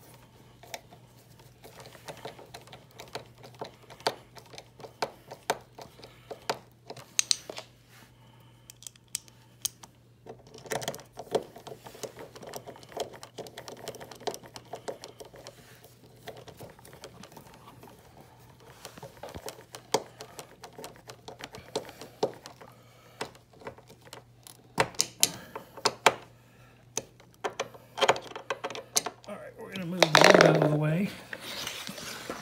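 Irregular small clicks, taps and scrapes of a screwdriver and metal hinge hardware being worked under a refrigerator door as the lower hinge is refitted, over a steady low hum.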